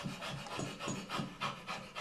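A man panting rapidly on purpose, short quick breaths in and out at about four a second, to show that breathing can be controlled at will.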